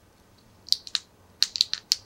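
Sharp little plastic clicks from miniature 1/6-scale holster and pouch parts being handled and fitted: three clicks just under a second in, then five more in quick succession in the second half.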